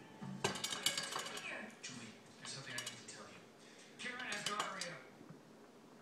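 Hard clinks and taps of small stones and glass on a glass-topped table, in uneven clusters, as a kitten paws at it.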